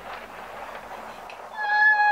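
A loud, steady pitched tone, like a beep or horn note, starts about one and a half seconds in and holds at one pitch for about a second, after a stretch of faint hiss.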